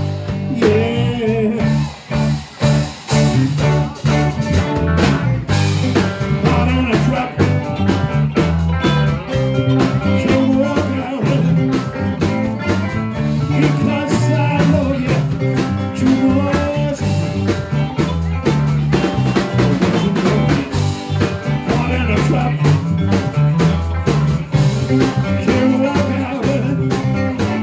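Live pub band playing a song with two electric guitars, bass guitar and drum kit, with a man singing into a handheld microphone.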